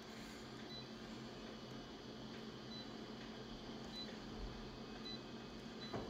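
Multifunction copier's touch panel giving short, faint high beeps every second or so as its on-screen buttons are pressed, over a steady low machine hum.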